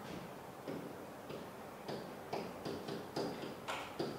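Faint, irregular clicks and taps of a pen against an interactive whiteboard as numbers are written on it, about eight taps spread unevenly over the few seconds.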